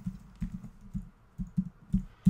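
Computer keyboard being typed on as a password is keyed in: about six separate keystrokes at an uneven pace.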